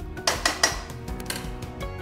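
Metal ladle scraping and clinking against the stainless-steel Amway Queen wok as cabbage is stirred, with a few sharp clinks in the first second and a half. Background music plays under it.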